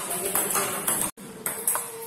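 Table tennis balls being struck by paddles and bouncing on the table in a fast multiball forehand drill, several sharp clicks a second. There is a brief break about a second in.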